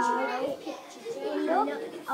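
A child's voice speaking, reciting words of a story aloud.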